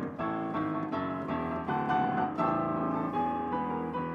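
Piano played fast, a quick stream of many notes.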